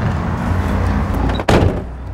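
A van door slammed shut once, sharp and loud, about a second and a half in, over a steady low rumble.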